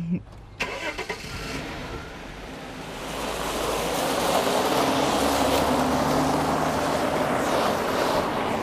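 A saloon car pulling away and driving off over a gravel drive: the engine runs and the tyres crunch on gravel, the sound growing louder from about three seconds in.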